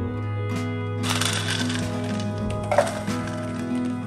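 Acoustic guitar background music, over which small hard dry food items rattle and pour into a clear plastic jar for about a second and a half, starting about a second in. A sharp click follows shortly before three seconds in.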